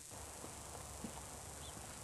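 Quiet outdoor background of a TV drama scene: a low steady hum with a few faint knocks, the clearest about a second in, and a brief high chirp later on.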